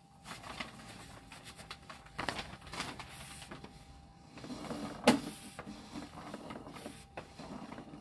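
Sewer inspection camera's push cable being fed down the line from its reel, giving an irregular clicking and rattling, with one sharp click about five seconds in.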